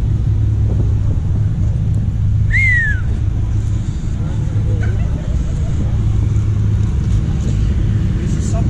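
Steady low rumble of a car engine idling, with a brief falling whistle about two and a half seconds in.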